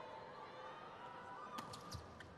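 Faint arena crowd noise, then a few sharp thuds close together near the end: a volleyball being bounced on the court floor before a serve.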